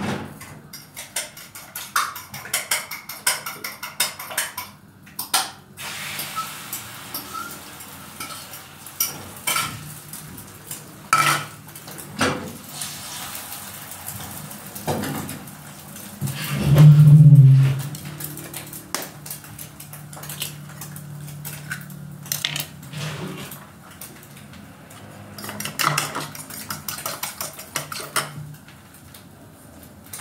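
A metal fork clinking against a ceramic bowl and dishes being handled, with many sharp clicks and knocks, as eggs are beaten in the bowl. A brief louder low thump comes about seventeen seconds in.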